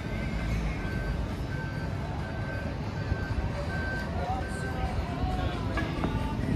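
Busy city street ambience: passers-by talking, music playing and a constant low rumble. A short high beep repeats evenly a little more than once a second.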